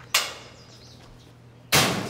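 Metal school locker door slammed shut near the end, a loud metallic crash with a short ring, after a lighter sharp knock about the start.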